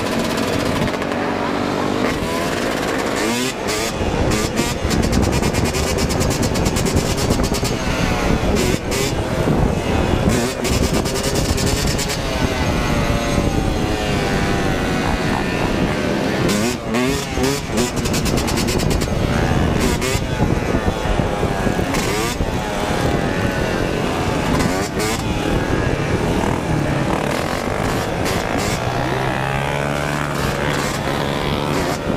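Dirt bike engine revving up and down repeatedly under hard throttle while the bike is ridden on its rear wheel in wheelies, with other motorcycles and ATVs running close by and wind rushing over the microphone.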